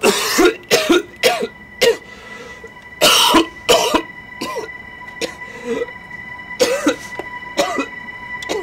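A person making a string of about a dozen short, cough-like vocal bursts, with a faint steady high-pitched tone underneath from about a second in.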